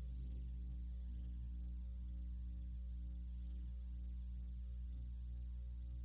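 Steady electrical mains hum: a low, unchanging buzz with its overtones, carried on the recording's audio line.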